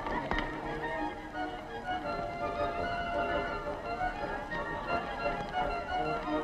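Barrel organ playing a tune in steady held notes.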